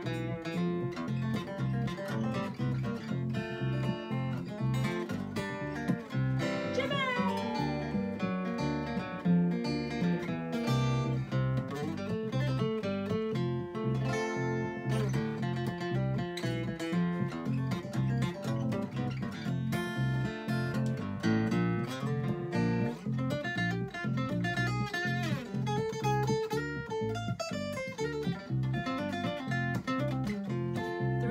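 Instrumental break of a country-style song: an acoustic guitar picks a solo, with a sliding note about seven seconds in, over a steady plucked electric bass line.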